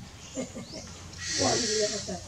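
Macaque calls: a few short cries, then a louder, longer bleat-like cry with a hissing edge in the second half.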